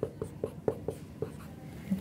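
Dry-erase marker writing on a whiteboard: a quick series of short strokes and taps as a line of symbols is written out.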